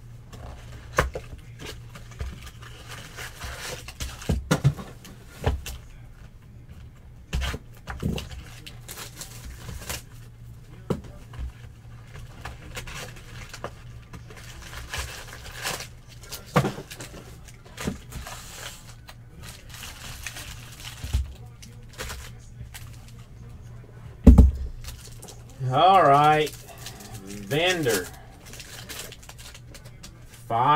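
Hands handling a cardboard card box and foil-wrapped trading card packs: scattered light taps, knocks and rustles, with a louder thump about 24 seconds in. A person's voice sounds briefly twice near the end.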